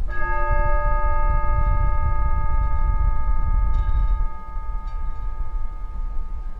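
A bell struck once, its several overlapping tones ringing on and slowly fading, over a steady low rumble of wind on the microphone.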